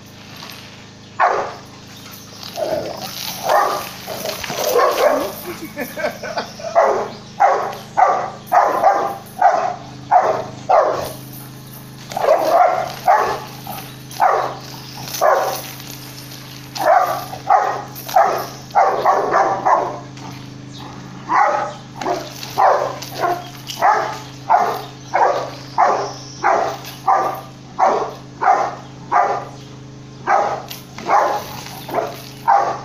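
Rottweiler barking at a goat in a long series of short, quick barks, in runs with brief pauses between them.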